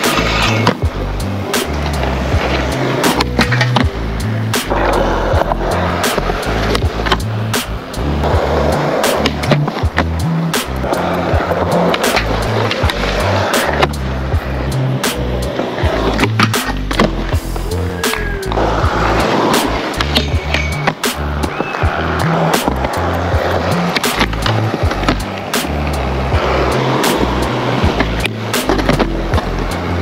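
Skateboard wheels rolling on concrete, with repeated sharp clacks of board pops, landings and grinds on a rail and ledge, over background music with a steady beat.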